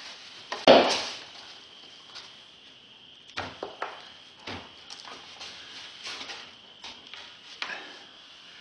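Hardened Sculptamold scenery shell cracking as it is pried and broken off a pink foam block over dried primer. There is one sharp crack about a second in, then a scatter of smaller cracks and crunches.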